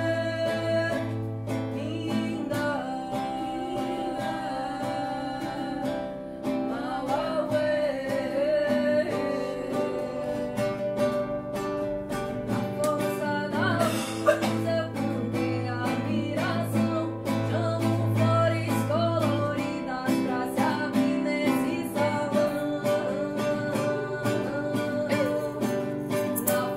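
Ritual song sung to acoustic guitar: voices singing over steady plucked and strummed chords. A brief sharp tap sounds about halfway through.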